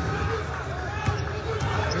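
A basketball being dribbled on a hardwood court under steady arena crowd noise and voices, with one sharper bounce about a second in.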